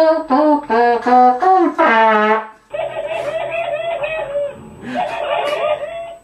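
Software-instrument melody in a brass-like tone: a short tune of held notes, each about half a second to a second long. About halfway through, a buzzier, duller, wavering sound takes over.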